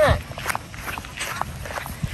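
Footsteps of people walking briskly on short grass: a run of soft, uneven steps.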